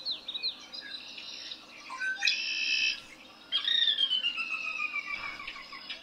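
Male red-winged blackbird singing: a run of quick down-slurred notes, a short buzzy trill about two seconds in, then a long falling whistle from about three and a half seconds.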